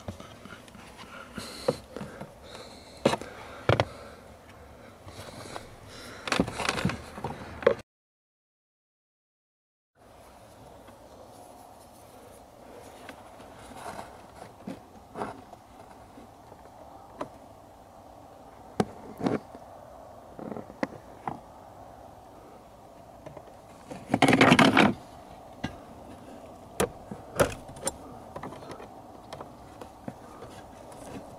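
Hands working among wiring and plastic trim at an interior fuse box under a dashboard: scattered small clicks and knocks, with a louder rustle of about a second some 24 seconds in. The sound cuts out completely for about two seconds, about eight seconds in.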